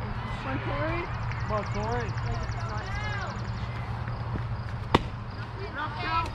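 Voices of players and spectators calling out across a softball field, with one sharp crack about five seconds in.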